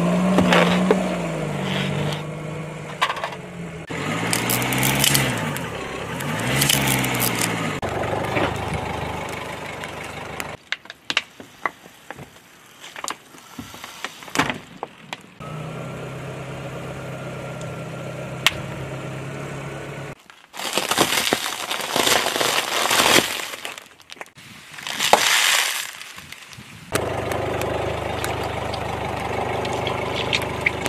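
A car's engine running as its tyre rolls slowly over plastic and rubber toys, with sharp plastic cracks and crunches as they are crushed, and a couple of loud noisy bursts in the later part.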